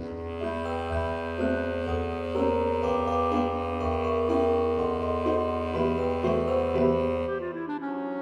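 Instrumental background music with held notes and chords that change every second or so. A low bass line drops out near the end.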